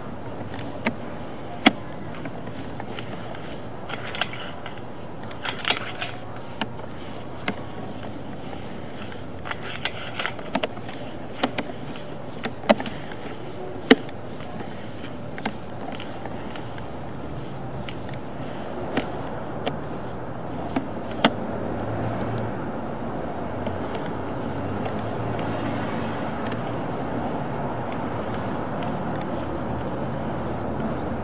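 Sewer inspection camera push cable being fed down a main sewer line: irregular sharp clicks and knocks over a steady rushing noise, which grows a little louder about two-thirds of the way in.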